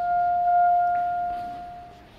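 Elevator arrival chime: a single bell-like ding that rings out and fades away over about two seconds.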